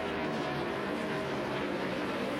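A pack of NASCAR Nationwide stock cars racing side by side, their V8 engines blending into a steady, layered drone of several pitches.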